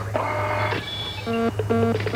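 Sound-effect electronic beeps, short multi-tone blips repeating about three times a second from a little past halfway, over a steady low electronic hum, the kind used for a computer readout as on-screen text is typed out.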